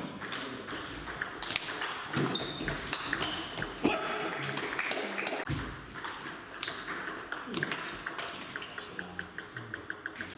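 Table tennis ball being struck by bats and bouncing on the table during rallies, sharp pocks at irregular intervals, with a quick run of small bounces near the end.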